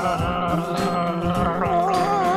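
A man and a boy gargling water with their heads tilted back, over background music.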